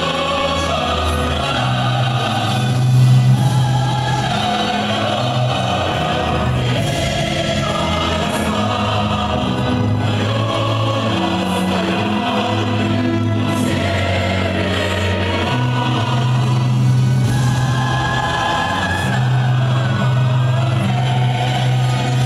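Music over an ice arena's sound system with a crowd of fans singing along, a steady bass line held underneath; it swells briefly about three seconds in.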